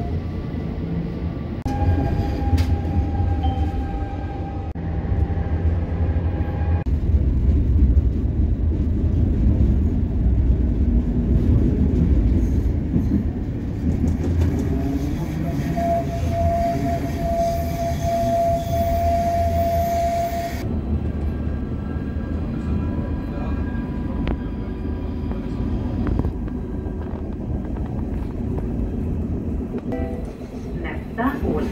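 Tram running on its rails, heard from inside the car: a continuous low rumble of wheels and running gear. A steady whining tone rises above it twice, briefly early on and for about five seconds around the middle, while the tram rounds a curve.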